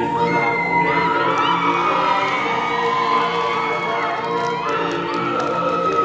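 Audience cheering and whooping with many high-pitched shouts, over group singing with music that runs on steadily underneath.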